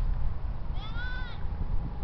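A single high-pitched shout, drawn out for about half a second and rising then falling slightly, a little under a second in, over a steady low rumble.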